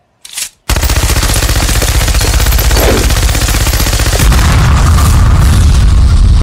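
Loud edited-in outro sound effect: a continuous rapid rattle of repeated bursts over a deep rumble, starting under a second in after a brief blip. The rumble grows heavier about four seconds in, and the sound cuts off suddenly.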